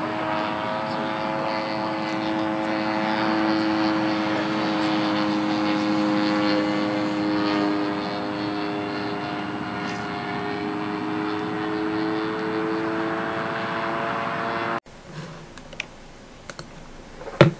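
Propeller engine of a small fixed-wing UAV flying overhead: a steady drone whose pitch drifts slowly up and down. It cuts off abruptly near the end, and a few faint clicks follow.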